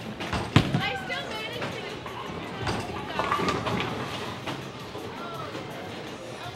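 A bowling ball lands on the wooden lane with one sharp thud about half a second in. Background voices and music from the bowling alley continue under it.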